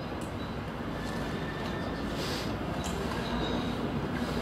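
Steady low rumbling background noise that grows slightly louder, with a brief soft hiss about two seconds in.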